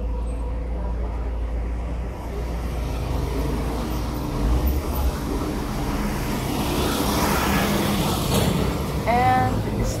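Road traffic: a steady low rumble of vehicles, with one passing and swelling loudest about seven to eight seconds in. A woman's voice comes in at the very end.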